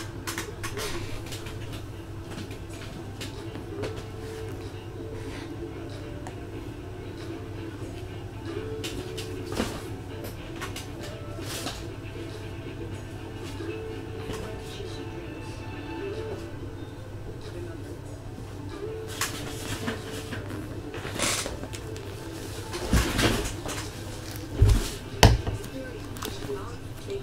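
Faint background talk and music with a low hum, under intermittent rustles and clicks of trading-card packs and cards being handled. A few louder knocks come near the end.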